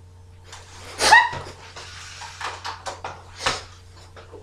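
A person gagging in disgust with a sausage in the mouth: a loud, strained cry about a second in, then a run of breathy, spluttering noises and another sharp burst near the end.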